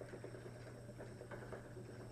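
Faint sounds of a spinning wheel turning as wool fibre is drafted by hand: a few soft rustles and light ticks over a low, steady hum.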